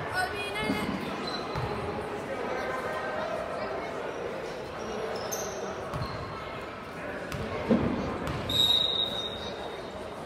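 Basketball bouncing on a hardwood gym floor, several separate bounces with the two sharpest near the end, as it is dribbled at the free-throw line. Voices talk throughout in the echoing gym.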